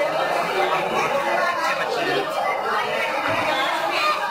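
Speech: people talking, with chatter around them in a room.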